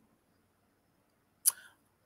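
Near silence, broken about one and a half seconds in by a single short click-like mouth sound, a man's lip smack or quick breath just before he speaks.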